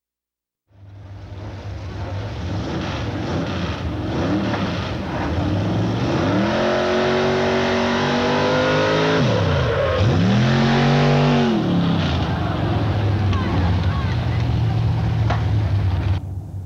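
A modified racing pickup truck's engine revving hard over a steady low rumble. Its pitch climbs, drops sharply about nine seconds in, then climbs back and holds before settling.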